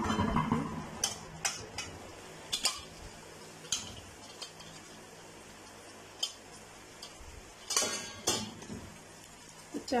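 Soaked basmati rice tipped into a kadai of boiling jaggery syrup, making a brief rush about the first second. Then a metal slotted spoon knocks and scrapes against the metal pan as the rice is spread, with scattered clinks and a burst of them near the end.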